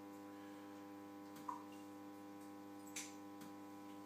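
Faint, steady electrical hum from the running standard high bay lamp's ballast, a stack of even pitched tones. Two faint clicks come about one and a half and three seconds in as the meter clamp and lamp wiring are handled.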